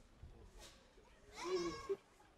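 A woman crying, with a short wavering wail near the end.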